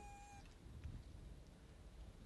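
Near silence: the last held note of background music fades out in the first half second, leaving only a faint low rumble of background tone.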